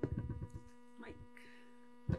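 Steady electrical mains hum from the meeting-room microphone system, with a few soft low knocks in the first half second.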